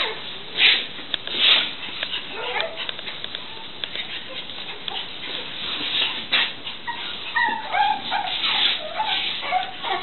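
A dog whining and yelping, with a few sharper barks. In the last few seconds the short high-pitched whines come thick and fast.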